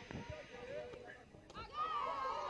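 Faint voices calling out across a softball field, growing louder late on, with one short click about one and a half seconds in.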